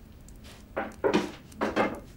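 A wooden paddle scraping across a floured wooden table in a few short strokes as it slides under a thin round of rolled-out flatbread dough.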